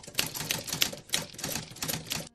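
Typewriter keystroke sound effect: a quick, slightly uneven run of key strikes, about seven a second, as on-screen text types itself out.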